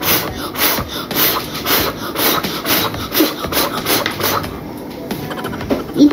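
A child blowing hard across a plate of water in quick repeated puffs, about two a second, stopping a little after four seconds.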